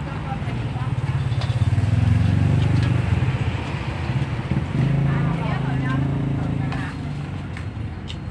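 A motor vehicle's engine drones low and steady close by, swelling about a second in and again around five seconds in.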